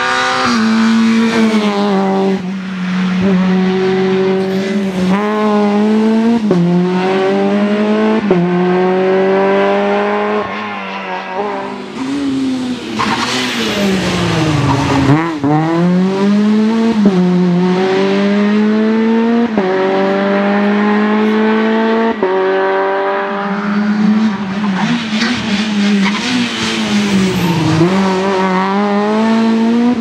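Škoda Fabia R2 rally car's four-cylinder engine at full throttle, its pitch climbing and dropping back again and again as it changes up through the gears. About halfway through the car passes close by, and its pitch falls sharply as it goes past.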